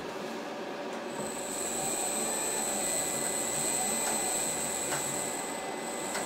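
Mirror-o-Matic mirror-polishing machine running, its pitch-faced tool working over the turning glass mirror with a steady grinding noise. About a second in a high, steady squeal sets in and holds, with a few faint clicks.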